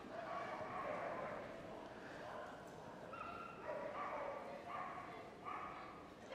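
A Staffordshire Bull Terrier held at the start line whining in a string of short, high cries, each held on one pitch for under half a second. The whining is faint.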